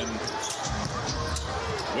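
Basketball game audio in an arena: a basketball bouncing on the hardwood court over a steady crowd murmur, with faint commentary.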